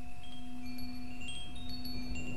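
Wind chimes ringing softly in short, scattered high notes over a steady low drone.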